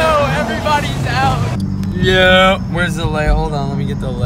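Several voices shouting and calling out, with one long held yell about two seconds in, over a steady low vehicle rumble.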